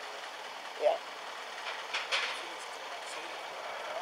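Steady outdoor background hiss with a brief spoken "yeah" about a second in and a short faint sound about two seconds in.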